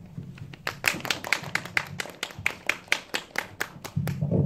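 A small audience clapping, starting about half a second in. The claps are sharp and closely spaced, about five a second, with one clapper standing out close to the microphone.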